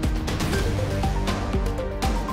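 Background music with a steady beat, about two beats a second, under a line of pitched notes stepping upward.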